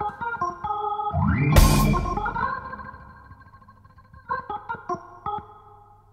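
A jazz band playing live, led by keyboard chords and runs. About one and a half seconds in, a cymbal crash and a bass hit land together. A held chord then fades away, and a few short keyboard notes follow near the end as the music thins out.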